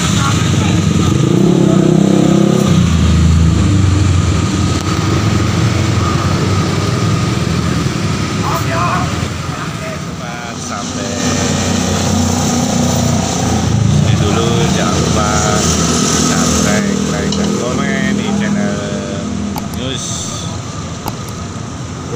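Road traffic: motorcycle and car engines running and passing, a steady low rumble that swells about two seconds in, with people's voices over it.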